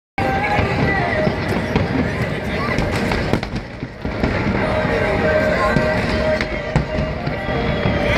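Fireworks going off in a run of pops and crackles, with a crowd's voices throughout.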